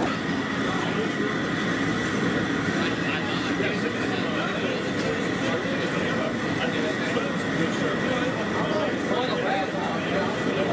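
Indistinct chatter of several people, no words standing out, over a steady rushing background noise.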